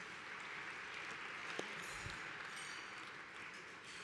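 Audience applauding, faint and steady, heard through the podium microphone in a large hall.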